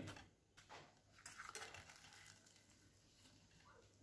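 Near silence, with a few faint, short soft sounds between about one and two seconds in, the kind made by fingers handling food on a steel plate.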